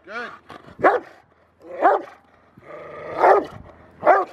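A Rottweiler barking up at the training helper, four sharp barks about a second apart, the last one longer. The dog is guarding the helper without biting.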